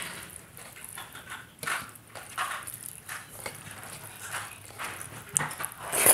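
Close-miked eating sounds: a hand squishing rice soaked in thin ridge gourd curry on a steel plate, with chewing and lip smacks in irregular wet squelches. Near the end, a louder burst comes as a handful goes into the mouth.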